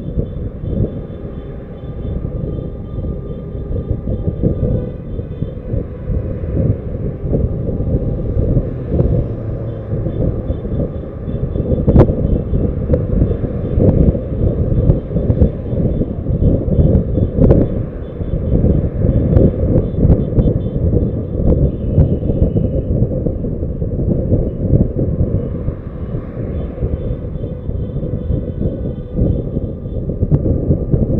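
Wind buffeting the microphone of a camera mounted on a moving car, with the car's road noise underneath: a loud, steady, low rumble that surges and dips. A sharp click about twelve seconds in.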